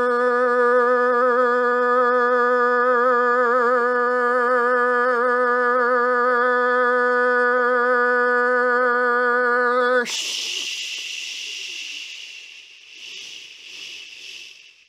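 A man's voice drawing out the word "Blursh": one long held note on "blurrr" for about ten seconds, wavering slightly, then breaking suddenly into a long hissing "shhh" that fades away.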